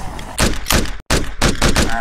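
Rapid gunfire sound effects: about ten sharp shots in two seconds, each with a short boom after it, broken by a brief cut to silence about a second in.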